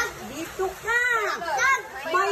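Young girls' high-pitched voices talking and calling out among themselves, the strongest outburst about a second in.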